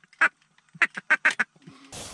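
Duck call blown by a hunter at close range: one short quack, then a quick run of five quacks. The sound cuts abruptly to a steady hiss-like noise just before the end.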